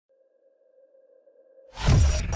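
Intro stinger sound design: a faint steady tone, then about 1.7 s in a sudden rising whoosh that lands in a loud, bass-heavy hit near the end.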